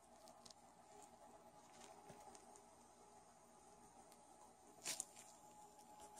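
Near silence: room tone with a few faint clicks, and one short handling rustle about five seconds in.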